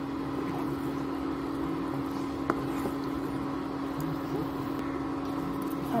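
A spatula is stirring and scraping a thick besan, sugar and coconut barfi mixture in a non-stick kadhai, over a steady hum from the cooktop. There is one short click about two and a half seconds in.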